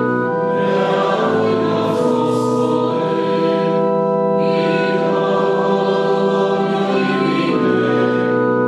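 Choir singing slowly in long, held chords that change every second or two.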